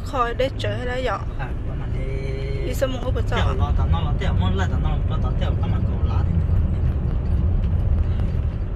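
Steady low rumble of a car driving along an unpaved dirt road, heard from inside the cabin. People talk over it in the first half.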